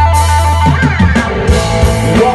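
Live rock band playing an electric guitar solo over bass and drums: a long held lead note gives way to a quicker run of changing notes about two-thirds of a second in, with cymbal crashes.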